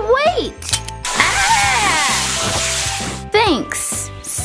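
Sound effect of a garden hose spraying water: a rushing hiss that starts about a second in and cuts off after about two seconds, with a high voice crying out over its start. Background music runs underneath.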